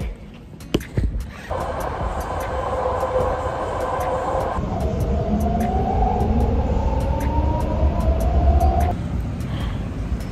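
BART commuter train riding, heard from inside the car: a steady low rumble with rail noise, and from about halfway in a whine that climbs slowly in pitch and stops near the end.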